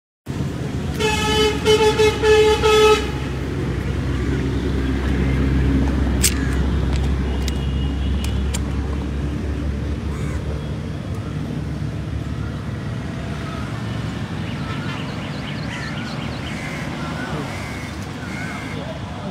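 A vehicle horn sounds in several short blasts about a second in, over a steady low rumble of road traffic that goes on after it.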